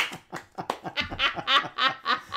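People laughing hard: a quick, even run of laughs.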